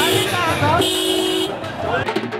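A police car's horn: a short toot, then a longer honk of about three-quarters of a second starting just under a second in, over the voices of a crowd.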